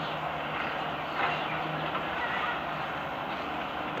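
Steady outdoor background noise from distant traffic, with a slight swell about a second in.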